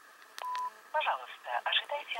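A click and a short beep from a Nokia mobile phone about half a second in, then a voice coming through the phone's loudspeaker, thin and narrow as a phone line sounds.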